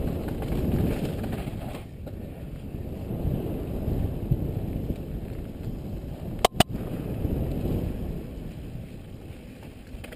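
Mountain bike descending a rough dirt singletrack, heard from a helmet-mounted camera: a steady low rumble of tyres on dirt, the bike rattling and wind on the microphone. Two sharp clicks come close together about six and a half seconds in.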